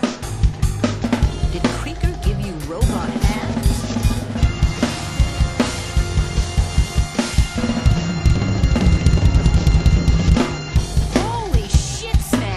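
Drum kit (Precision Drum Company) played in a groove over a bass guitar line, with kick, snare and cymbal strokes. Busier, quicker strokes run from about eight seconds in.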